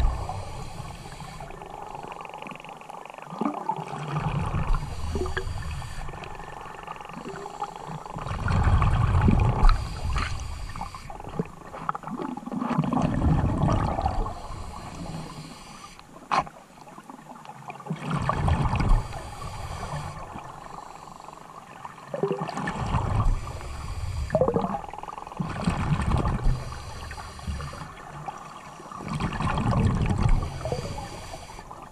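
Muffled water noise heard underwater through a camera housing, swelling and fading every few seconds, with a single sharp click about sixteen seconds in.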